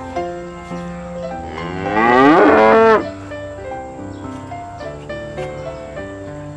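A carabao (water buffalo) lowing once, a long call that rises in pitch about a second and a half in and stops abruptly at about three seconds. Background music of sustained notes plays underneath.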